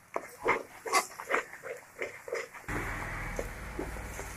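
Spatula scraping and stirring thick masala paste in a kadhai as it fries, in short repeated strokes two or three a second. About two-thirds of the way in, a steady low hiss sets in.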